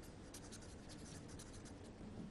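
Marker pen writing by hand: a run of faint, short scratches of the tip across the writing surface.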